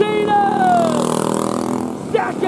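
A man's long shouted call, falling in pitch over about a second, with go-kart engines running behind it.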